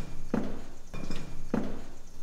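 A few dull thuds or knocks, the clearest about a third of a second in and about a second and a half in.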